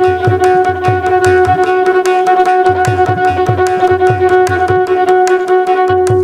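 Carnatic violin playing a varnam in raga Kalyani, with quick, dense mridangam strokes and the steady twanging drone of a morsing (jaw harp) underneath.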